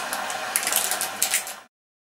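A few light clicks and rustles as hands handle a small object, cutting off suddenly about a second and a half in.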